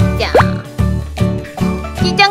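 Light children's background music with a regular beat, with a quick sliding-pitch cartoon sound effect about a third of a second in.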